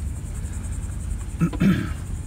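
Steady low rumble of a dually pickup truck heard from inside its cab, with a faint high buzz of insects outside. A short vocal sound about one and a half seconds in.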